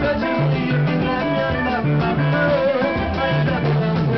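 Live band music led by electric guitar, with a repeating bass line underneath.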